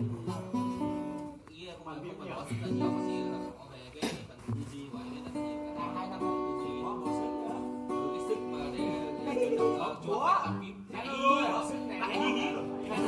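Acoustic guitar being played, a run of chords and picked notes.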